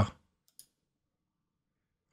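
A computer mouse button clicked once, a faint short tick about half a second in; the rest is near silence.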